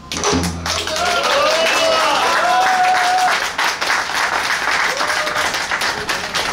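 Audience applause, many hands clapping steadily, with a few voices calling out over it in the first half.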